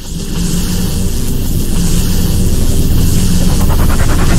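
Channel intro sound effect: a dense rumbling and hissing build-up that swells steadily louder, with music underneath.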